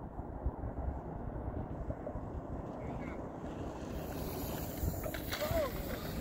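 Wind buffeting the microphone, a steady rumbling noise. A short voice call comes near the end.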